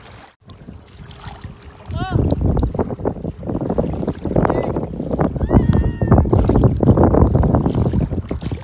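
Wind buffeting the phone microphone over shallow sea water, with short high voice calls about two seconds in and again around five to six seconds.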